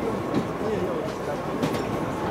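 Football pitch ambience inside an indoor arena: faint, distant players' voices over a steady rumbling background noise with a thin, constant high hum.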